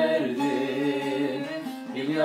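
A man singing a Turkish türkü (folk song) in a drawn-out, ornamented melodic line, held across the whole phrase over a steady low tone. His voice dips briefly near the end before the phrase resumes.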